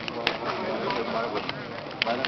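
Several men's voices talking at once at a low level, no one voice standing out, with a short sharp click about a quarter-second in.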